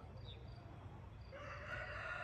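A rooster crowing faintly, one long crow starting about a second and a half in.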